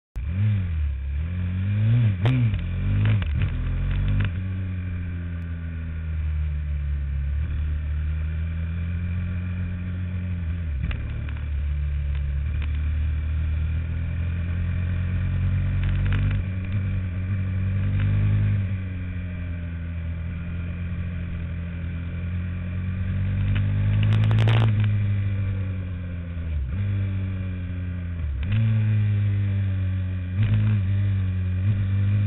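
Onboard sound of a motorcycle engine lapping a track. The engine note rises and falls with the throttle through the corners, with quick pitch drops at the gear changes about ten seconds in and again near the end. There is a short loud knock or gust about three-quarters of the way through.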